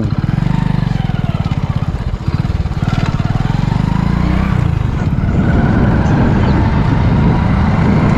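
Motorcycle engine running steadily at low road speed, its exhaust beat heard from the rider's seat.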